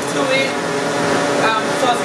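Countertop blender running steadily, its motor churning ice and frozen fruit into a protein shake.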